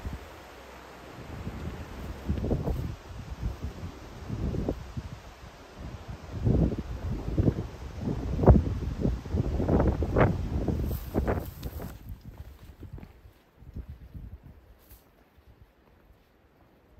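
Outdoor wind buffeting the microphone, with irregular gusty rustling of leaves and undergrowth, strongest in the middle. It dies down to a much quieter hush after about twelve seconds.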